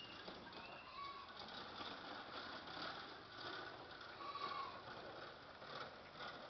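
Faint outdoor background with a few short, high bird chirps scattered through it.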